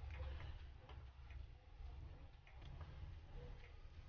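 Faint, scattered light clicks and taps as a Moto G7 Play's back cover is handled and held against the opened phone, over a low steady hum.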